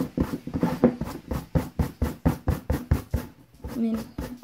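Old brush scrubbed briskly back and forth over punch-needle wool pile embroidery, about five scratchy strokes a second, combing the loose fluff out of the plush loops.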